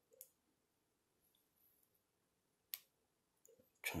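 Near silence broken by a few small plastic clicks as the missile-launch button on a plastic Lockheed dragon action figure is pressed, the sharpest click about three-quarters of the way through. The launch gimmick is not working properly and the missile does not fire.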